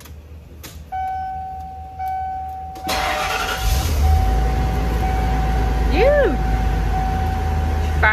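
Ford E350 shuttle bus engine cranking briefly and catching about three seconds in, then running with a steady low rumble, on its first start after sitting unused for a long time. A steady dashboard warning chime sounds from about a second in, once the key is on. A short rising-and-falling note comes about six seconds in.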